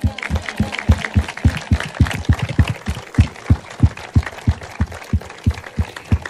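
Audience applause, with one pair of hands clapping close to the microphone at about three claps a second.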